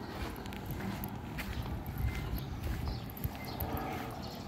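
Footsteps of a person walking along an asphalt road, a series of light irregular steps over a low rumble.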